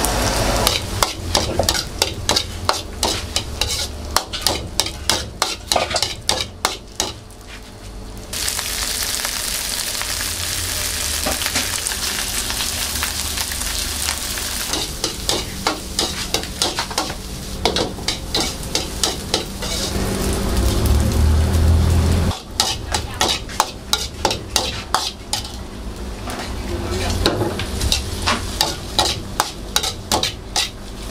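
Steel ladle clanking and scraping rapidly against a steel wok as fried rice is stir-fried. About eight seconds in, a loud, steady sizzle takes over for about fourteen seconds, and then the quick ladle strikes return over the frying.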